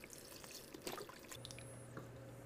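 Vegetable stock poured from a carton into a steel stockpot of roasted vegetables: faint liquid pouring and splashing, with a few light clicks.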